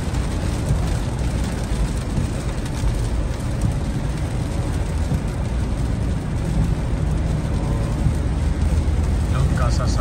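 Steady in-cabin road noise of a car driving through heavy rain: tyres rumbling on the flooded highway, with rain hissing on the windshield and body.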